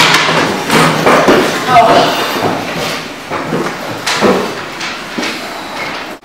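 Indistinct voices that the recogniser could not make out, mixed with a series of sharp knocks and thuds.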